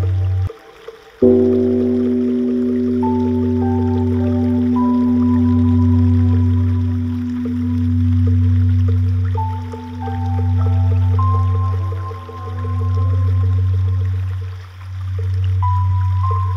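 Slow ambient meditation music: a low drone that swells and fades every two to three seconds under long held tones and a slow, sparse melody. The music drops out briefly about a second in, then comes back.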